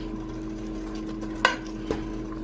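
A metal spoon stirring chili in a stainless steel pot, with two light clicks of the spoon against the pot in the second half.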